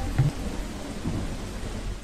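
Steady rain falling on trees and foliage, with a low rumble of thunder beneath it.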